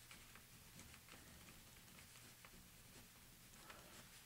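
Faint, irregular scratching and ticking of a correction pen's metal tip dabbing and drawing on a paper card, over low room hum.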